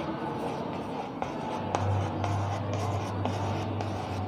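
Chalk scratching and ticking on a blackboard as rows of small circles are drawn in quick strokes, with one sharper tap of the chalk a little before two seconds in.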